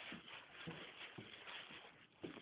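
Faint rustling, shuffling noise with a few soft low knocks.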